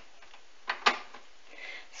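Two light, short knocks about a fifth of a second apart, a little under a second in, over faint background hiss.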